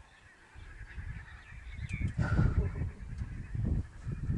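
A bird's short honking calls about two seconds in, over a low, uneven rumbling noise.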